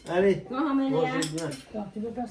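Forks and cutlery clinking against plates at a meal, under a woman talking.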